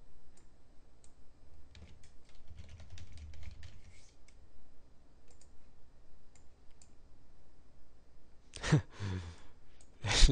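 Computer keyboard and mouse clicking: scattered light clicks as a search term is typed into a web search box. Near the end comes a short, louder vocal sound falling in pitch.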